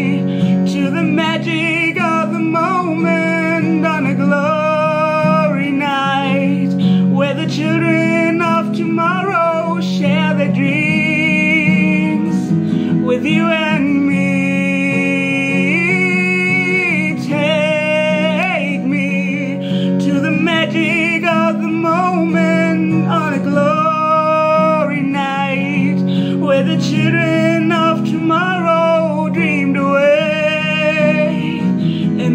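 A woman singing a melody with vibrato over a steady backing track with guitar.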